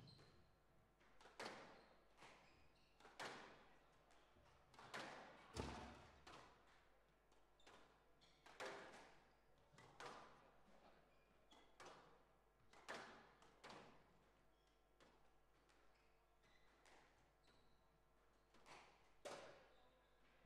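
Squash rally: the ball being struck by rackets and hitting the court walls, sharp echoing knocks every second or two.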